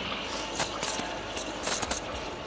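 Espresso machine steam wand steaming milk in a metal pitcher: a steady hiss, with a few light clicks.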